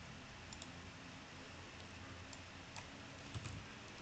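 A few faint computer clicks over low room hiss: mouse clicks choosing a menu item, then keyboard key presses as a name is typed near the end.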